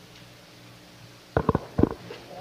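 A steady low electrical hum, then a quick run of about four low thumps close together starting about a second and a half in.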